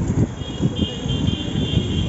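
Cycle rickshaw riding over a city road: a continuous rumble with irregular low knocks and rattles. About half a second in, a high, steady ringing tone starts and lasts over a second.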